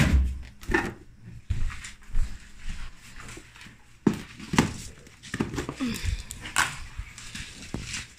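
Handling noise from a plastic food tub being carried and set down on a wooden floor: a run of knocks, bumps and rustles, with a few short pitched sounds mixed in.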